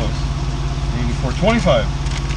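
Diesel engine of a 2015 Kenworth T680 semi truck idling steadily, a low even hum heard inside the cab. A voice speaks briefly about halfway through.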